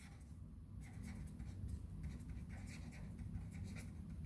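Marker pen writing on paper: faint, irregular scratching strokes as letters are written.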